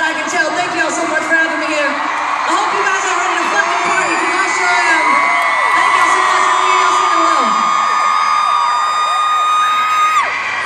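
Arena concert crowd screaming and cheering, mixed with a singer's voice over the PA. A long high note is held through the second half and cuts off near the end.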